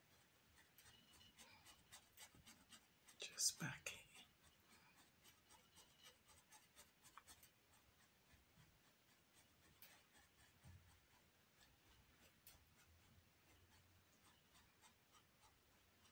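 Faint, scratchy strokes of a paintbrush dabbing paint onto canvas, densest in the first seven seconds. About three and a half seconds in comes one brief, louder sound whose pitch falls.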